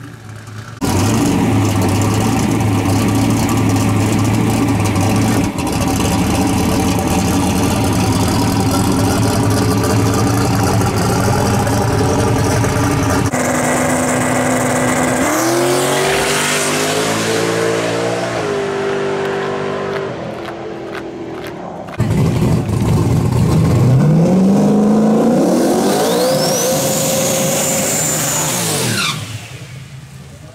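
Drag-race car engines at full revs. First a long burnout held at steady high revs. Then the engine revs climbing in steps through the gears. Then another run-up where the revs rise over a few seconds with a high turbo whistle climbing along with them, cut off suddenly near the end.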